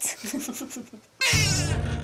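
A newborn baby crying in short, wavering wails over background music that starts suddenly a little past a second in.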